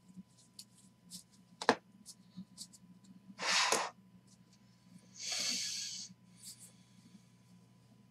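Stacks of trading cards being handled and squared up: light clicks of card edges, a sharp click about a second and a half in, and two longer hissing swishes of cards sliding, about three and a half and five and a half seconds in.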